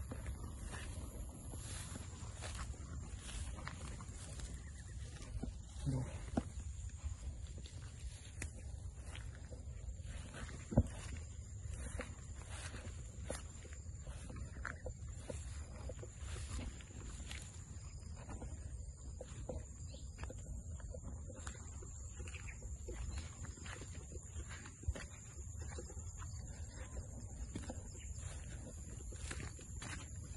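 Footsteps and brushing through tall grass and scrub, with frequent rustles and clicks and one sharp click about eleven seconds in, over a steady high-pitched insect drone and a low rumble of wind and handling.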